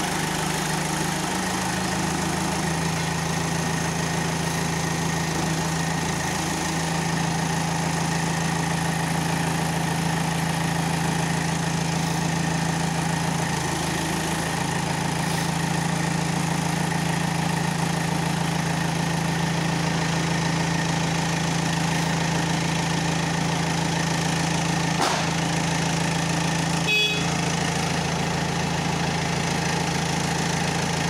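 Manitou TLB 740S backhoe loader's diesel engine idling steadily, its pitch stepping up slightly a couple of seconds in. A brief click sounds near the end.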